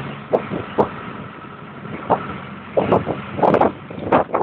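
A moving vehicle heard from inside: steady road and engine noise with irregular knocks and rattles, about ten in four seconds.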